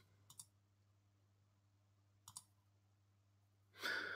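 Near silence with two faint computer mouse clicks about two seconds apart, over a faint steady hum, and a breath near the end.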